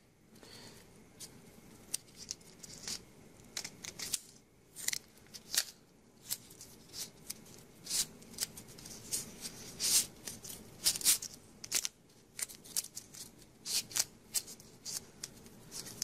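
Masking tape crinkling and crackling as it is wrapped by hand around a small electric motor, in irregular short rustles.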